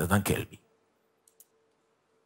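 A man's short spoken phrase, then a pause with only a faint steady hum and two faint clicks.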